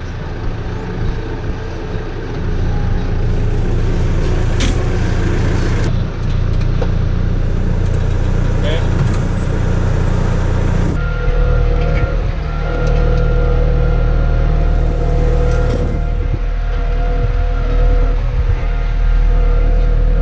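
Farm tractor engine running steadily close to the microphone while it tows a mole plough through a grass field. The sound changes abruptly twice, about six and eleven seconds in, and after the second change the engine note becomes steadier.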